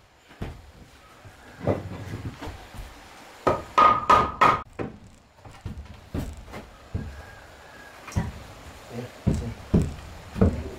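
Wooden boards and mortised legs of a hand-built wooden frame knocking and thudding as they are pushed and fitted together: a string of separate knocks, with a louder cluster of knocks about three and a half to four and a half seconds in.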